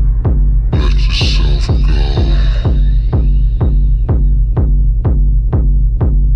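Tribal house dance music: a steady four-on-the-floor kick drum at about two beats a second over a deep sustained bass line. About a second in, a cymbal crash and a noisy sweep come in and fade away over the next couple of seconds.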